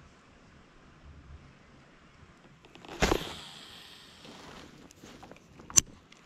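A cast with a baitcasting rod and reel: a sudden swish about halfway through, followed by a second or so of fading line-and-spool hiss, then one sharp click near the end, the loudest sound.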